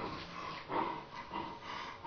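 A person's quiet, breathy vocal sounds in short bursts, about four in two seconds.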